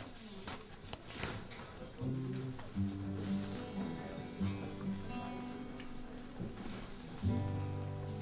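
Acoustic guitar strings plucked one low note at a time, each note ringing on before the next, with a firmer low note near the end.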